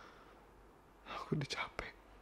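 A man's voice whispering a short phrase about a second in, after a quiet pause.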